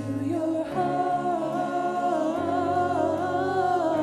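Worship song: a voice sings long held notes with vibrato over sustained accompaniment chords, the low notes changing a little past the middle.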